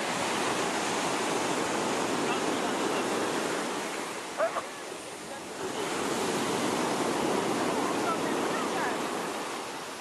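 Sea surf breaking and washing up a pebbly beach in a steady rush of noise. The surf swells twice, with a lull halfway through. A short voice-like sound cuts in briefly just before the lull.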